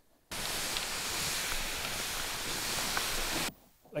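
A steady, even hiss that starts suddenly just after the beginning and cuts off suddenly about half a second before the end.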